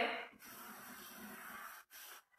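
Hands smoothing a sheet of newsprint down onto a PVA-glued painting surface, a faint steady rubbing of palms over paper.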